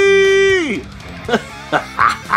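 A man's voice holding one long high note that slides down and breaks off just under a second in, with short vocal sounds after it, over faint background music with guitar.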